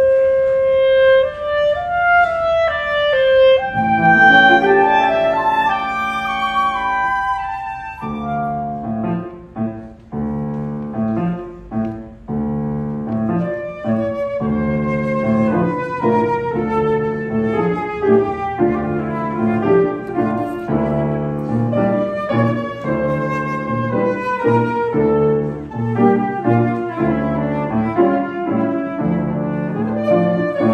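Flute, clarinet and piano trio playing French classical chamber music: a flowing woodwind melody over piano accompaniment. A steady low note enters about four seconds in, and the texture grows fuller from about eight seconds in.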